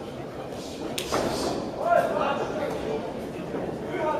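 Voices calling out in an echoing sports hall, with a single sharp smack about a second in.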